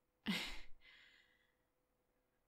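A woman's short, breathy sigh: a sharp start that trails off into a fading exhale over about a second.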